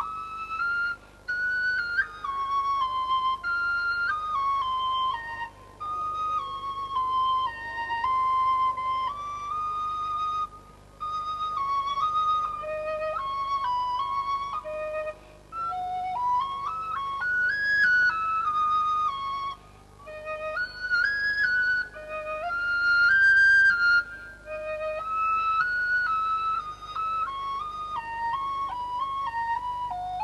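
Background music: a solo flute playing a slow melody in phrases of a few seconds, each ending in a short pause.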